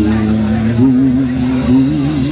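Live blues band holding a sustained chord on bass and guitar while the singer draws out one long note, which breaks into a wide vibrato about a second in.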